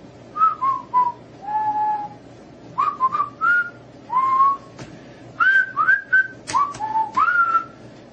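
A person whistling a tune in short phrases of single notes, many sliding up into pitch, with brief gaps between phrases and one longer held note near the start.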